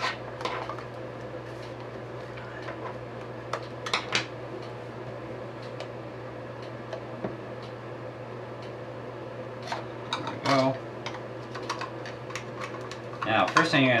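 Scattered small clicks and knocks of hard plastic parts as a dancing-water LED speaker's clear tube and base are handled and taken apart, over a steady low hum. The knocks come in small clusters about four seconds in and again after ten seconds.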